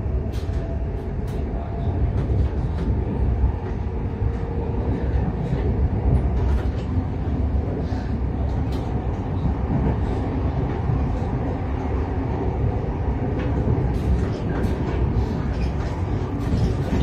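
Container wagons of a freight train rolling past close by: a steady low rumble of wheels on rail, with irregular clicks and knocks from the wheels and couplings.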